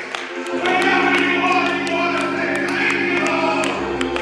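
Gospel singing over sustained keyboard chords that come in about half a second in, with a deeper bass note joining near the end.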